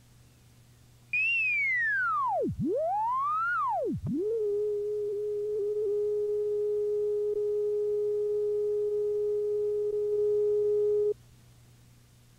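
Videotape line-up test tone under a commercial slate: after two swoops down and up in pitch, it settles into one steady, loud tone of middling pitch that cuts off suddenly about a second before the end.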